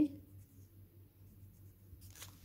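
Pencil writing a number on graph paper: a faint, brief scratching of graphite on paper.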